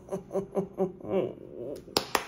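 A man laughing, a quick run of short 'ha' sounds that falls in pitch and trails off, then two sharp clicks near the end.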